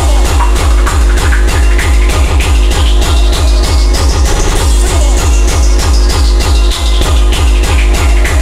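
Hardcore rave track: a fast, steady kick drum under synth parts, with a sweep that rises to a peak about halfway through and falls away again, and a quick roll of rapid kicks a little after the middle.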